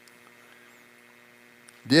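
Faint, steady electrical hum of a few low, even tones, with a soft click near the end just before a man's voice starts again.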